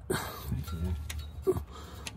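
Light handling noise of a battery cable's ring terminal being fitted over the stud of a starter solenoid, with a brief scrape or clink near the start, under murmured speech.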